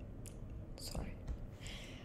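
Faint breaths and soft mouth noises from a person close to the microphone, in a few short hissy puffs over low room hum.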